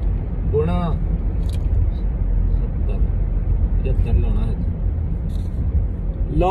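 Steady low rumble of road and engine noise inside a moving car's cabin. A brief voice sound comes just under a second in.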